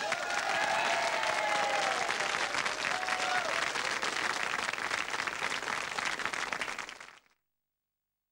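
Studio audience applauding after the band's final number, a dense steady clapping that cuts off suddenly about seven seconds in.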